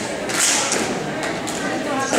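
Murmur of people talking in a large echoing hall, with a short hiss about half a second in and a few light knocks.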